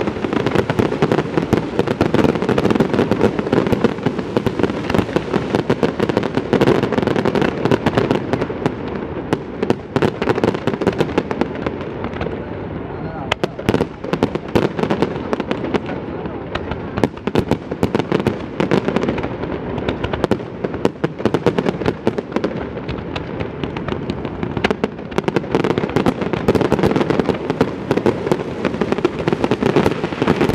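Fireworks display: a dense, continuous run of crackling and popping bursts with no break, over the steady chatter of a large crowd.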